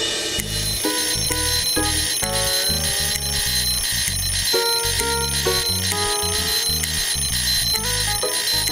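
Several alarm clocks ringing at once, a high-pitched ring repeating in even pulses, over background music with a melody and a bass beat.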